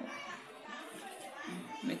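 Faint background voices chattering, with a woman saying "mix" near the end.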